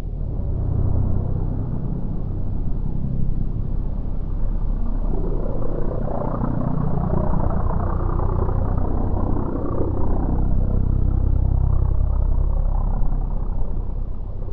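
Modified Pitts Special S2S aerobatic biplane's piston engine and propeller running under power, a rumbling drone that swells and grows brighter through the middle of the flight pass, then eases off.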